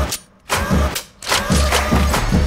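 Trailer sound effects of a car engine revving in loud bursts over deep bass hits, cut twice by brief drops to near silence.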